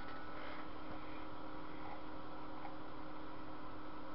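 Steady electrical hiss with a faint hum and thin whine, typical of a mains battery charger left plugged in with no batteries in it.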